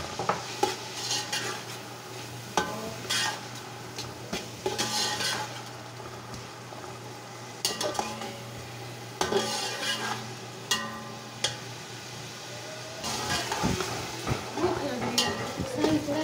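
Chopped tomatoes sizzling as they fry in hot oil with browned onions, while a metal slotted spatula stirs them, scraping and clicking against the metal pot again and again. A steady low hum runs underneath.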